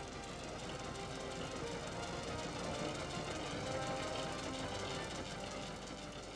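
Quiet background music of sustained notes over a steady low hum.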